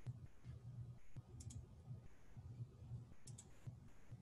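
Two faint computer mouse-button clicks, each a quick double tick, about a second and a half in and again a little after three seconds, over a faint low rumble.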